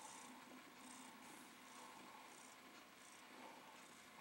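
A cat purring faintly while held and cuddled, barely above near silence, with soft breathy puffs every half second or so.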